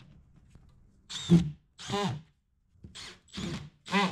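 Cordless drill/driver driving self-tapping screws into a plastic grille frame, in a run of short bursts that rise in pitch as the motor spins up, beginning about a second in.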